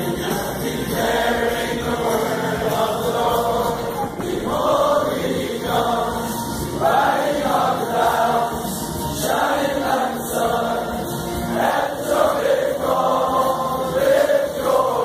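A large group of men's voices singing a worship song together, like a choir.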